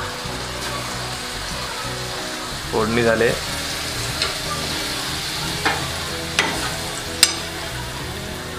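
Fried dried fish and masala sizzling in a steel pan on a gas stove as they are stirred with a steel spoon, with a few sharp clinks of the spoon against the pan in the second half.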